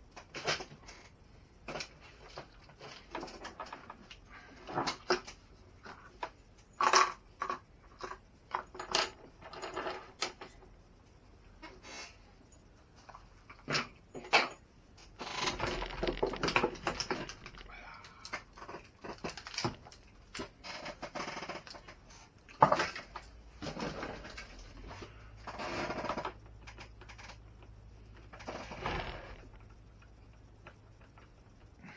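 Irregular clicks, knocks and rattles of plastic RC truck chassis parts and hand tools being handled as a Traxxas X-Maxx is taken apart by hand on a wooden workbench.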